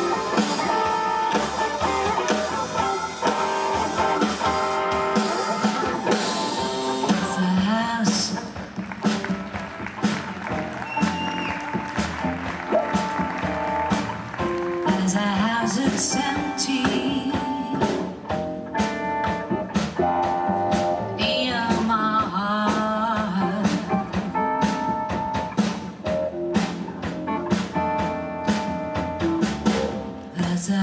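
Live jazz quintet playing, with a woman singing over electric guitar, upright bass, keyboard and drum kit.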